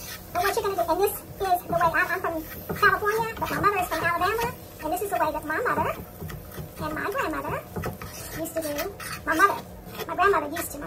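A person's voice talking, indistinct, in short phrases with pauses.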